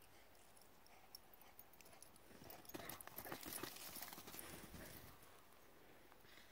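Quiet crunching and crackling of footsteps on dry dirt and twigs, scattered at first and busiest for a couple of seconds in the middle.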